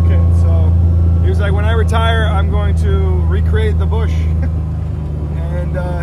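Steady low drone of a side-by-side utility vehicle's engine heard from its seat while riding, easing slightly in level near the end.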